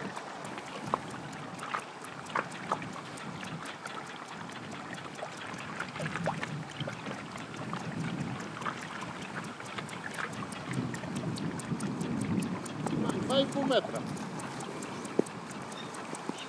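Water lapping and sloshing around an inflatable pontoon boat, with scattered light knocks and some wind on the microphone; a faint voice is heard briefly about 13 seconds in.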